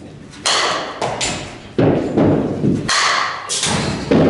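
Softball bat striking front-tossed softballs, with the balls thumping into the batting-cage netting and surroundings. Several sharp knocks ring out with an echoing decay in a large indoor hall.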